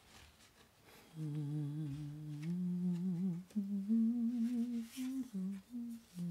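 A woman humming a slow wordless tune. It starts about a second in with long held notes, steps up in pitch around the middle, and breaks into shorter notes near the end.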